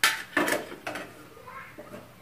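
Steel kitchen utensils clinking against steel vessels: three sharp metallic knocks in the first second, each with a short ring.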